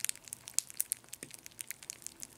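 Strawberry Krispies puffed rice cereal crackling and popping as milk soaks into it: many faint, irregular little clicks, the cereal's snap, crackle, pop.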